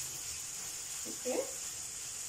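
Onions and tomato frying in oil in a frying pan, a steady, quiet, high sizzle.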